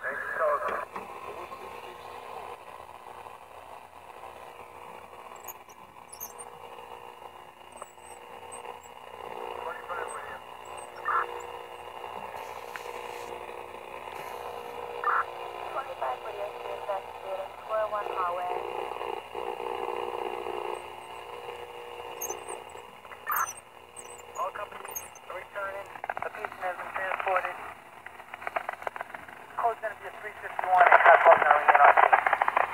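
Audio from a vintage Hallicrafters tube shortwave receiver being tuned across the band. Steady static hiss, with faint, garbled voices and short whistling tones that slide in pitch, coming and going as the dial moves past signals.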